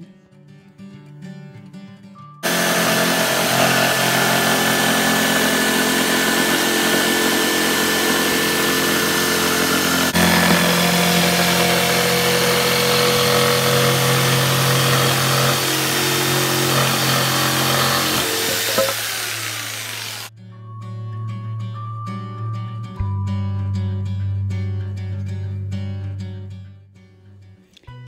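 Corded electric jigsaw cutting a curved line through a sheet of plywood. It starts abruptly about two seconds in, runs loud and steady for about eighteen seconds with small shifts in pitch as the cut goes round the circle, then stops.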